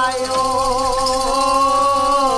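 A male voice singing one long held note with a slight waver, in the style of Bengali Bolan folk song.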